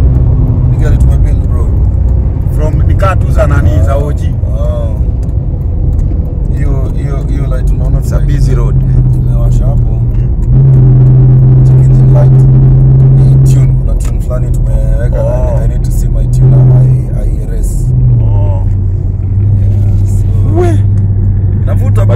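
BMW 318i's four-cylinder engine heard from inside the cabin while driving, a steady low drone under road rumble. It grows louder for a few seconds about halfway through, then drops in pitch near the end as the revs fall.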